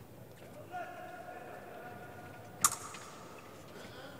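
A long, steady-pitched shout from someone in the fencing hall, cut about two and a half seconds in by a single sharp clack, the loudest sound here. The clack is from the fencers' blades or feet on the piste.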